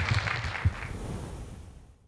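Audience applause, a dense patter of many hands with a couple of low knocks, fading out and cutting off near the end.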